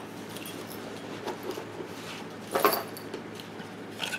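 Handling noise as a small knife is fetched and picked up: faint light clicks and rustles, with one brief, louder clatter about two and a half seconds in.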